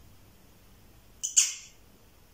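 A pet cat meowing once, short and high-pitched, a little over a second in, wanting attention.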